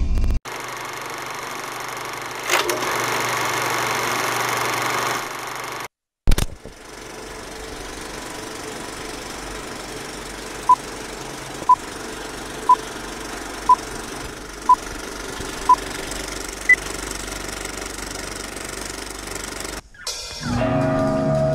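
Old film-projector style sound effect: a steady mechanical rattle with hiss, broken by a sudden thump about six seconds in. Later come six short beeps one second apart and then a single higher beep, like a countdown.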